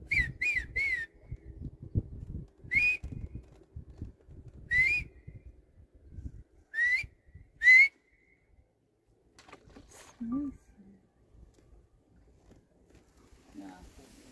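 Human whistling: short, sharp whistle notes that each rise in pitch, a quick run of three and then four single ones, the last the loudest. The whistles are a boat guide calling an African fish eagle down to a fish he is about to throw.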